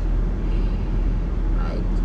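Steady low rumble inside a stationary car, with one short spoken word near the end.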